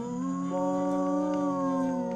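A person's drawn-out, howl-like vocal note held for about two seconds, rising slightly at first and sliding down near the end, over a steady lower background tone.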